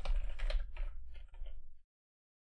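Rapid typing on a computer keyboard, a quick run of key clicks that stops shortly before the end.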